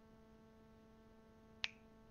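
Near silence with a faint steady hum, broken by a single sharp click near the end.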